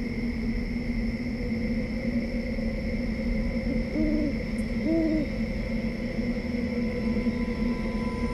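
Two short owl hoots, a second apart, each rising and falling in pitch, over a steady sustained drone.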